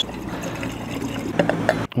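Water pouring from a plastic bottle into a handheld container, a steady splashing fill that stops just before the end.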